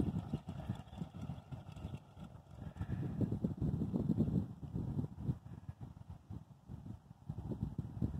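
Dune buggy engine running with a low, uneven puttering, heard from a distance; it grows louder about three seconds in and eases off again.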